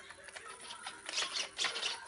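Quiet handling noise: a few light clicks and rustles, more of them in the second half, over a faint steady hum.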